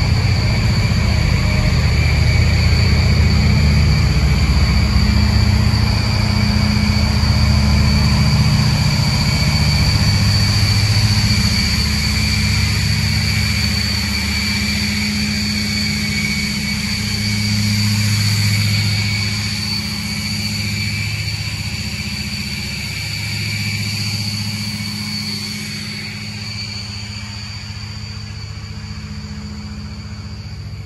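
The riverboat's diesel engines running, a deep steady drone with a constant high whine and a rush of wind and water over it, growing gradually quieter over the second half.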